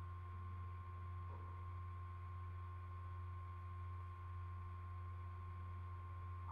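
Faint, steady electrical hum with a thin, high, steady whine over it: the background noise of a screen-recording setup, with nothing else happening.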